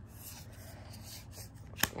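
Paper trading cards rubbing and sliding against each other in the hands as one card is moved off the stack to show the next. A single sharp click comes near the end.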